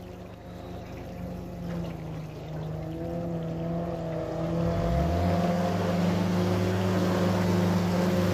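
Outboard jet boat engine running on plane, growing steadily louder as the boat approaches, with its pitch rising about five seconds in. A steady low engine hum runs underneath.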